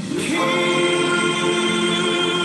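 Gospel choir singing a slow song in long held chords; after a brief break at the start, a new chord swells in and is sustained.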